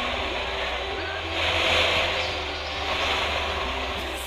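Rally car driving on a loose gravel course, the tyres hissing over the gravel with a steady low rumble underneath. The hiss swells briefly about one and a half to two seconds in.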